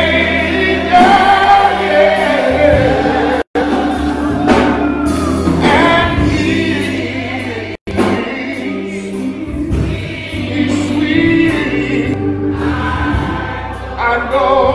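Gospel choir and congregation singing over steady instrumental accompaniment, a hymn of invitation at the end of a sermon. The sound cuts out completely twice for a split second.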